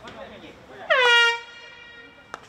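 Stadium end-of-period horn sounding one short blast about a second in, pitch dropping briefly at the start and then holding steady for about half a second: the signal that the second quarter of the field hockey match has ended.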